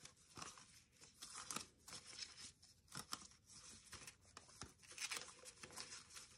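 Faint, intermittent rustling of paper being handled, with scattered light ticks.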